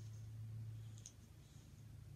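A quiet room with a steady low hum and one faint, short click about a second in.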